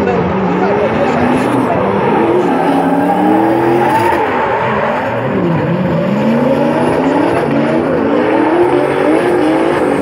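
Two drift cars in a tandem run, their engines revving hard with the pitch rising and falling again and again as they slide sideways with tyres spinning and smoking.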